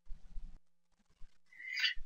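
Faint background with a soft rustle at the start, then a breath drawn in near the end, just before speaking.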